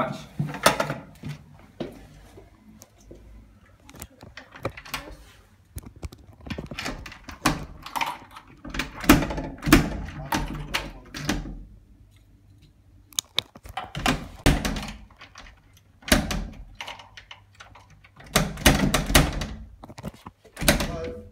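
A key being worked in a flat's door lock from the other side, with repeated clicks, rattles and knocks of the lock and door in several bursts. The lock is not opening.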